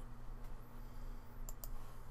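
A computer mouse clicking twice in quick succession about one and a half seconds in, over a steady low electrical hum.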